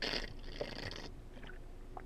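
A sip slurped from a lidded drinking tumbler: a hissy draw that lasts about a second, then fades to faint mouth sounds.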